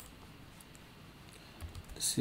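Faint, scattered clicks of a computer keyboard and mouse, a few taps over two seconds, with a short low sound near the end.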